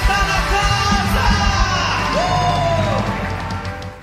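Live worship band playing the end of a song. The drum beat stops about a second and a half in, leaving a held final chord with a singer's voice sliding over it, and the sound then fades out near the end.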